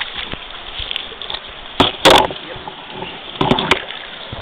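Muffled rushing of stream water heard through an underwater camera, broken by sharp knocks as the camera is moved. The loudest knock comes about two seconds in, and a few quicker ones about three and a half seconds in.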